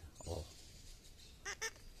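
Two short, shrill calls about a second and a half in from yellow-chevroned parakeets in the distance, the kind of call that often warns of a hawk nearby.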